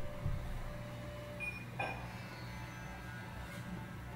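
Quiet room tone with a steady low hum, while the last note of the plucked-string intro music dies away over the first few seconds. There are two soft knocks or rustles, one just after the start and one about two seconds in.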